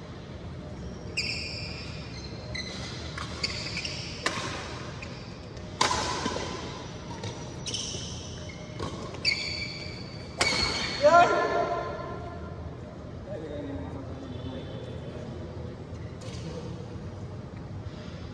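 Badminton doubles rally: rackets striking the shuttlecock with a sharp crack every second or two, and court shoes squeaking on the floor, echoing in a large hall. The loudest hits come about ten to eleven seconds in, and the play goes quieter after about twelve seconds.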